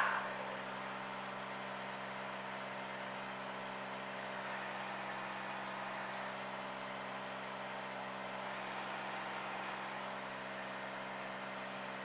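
Single-engine piston airplane's engine and propeller, heard inside the cabin as a steady drone with several held tones.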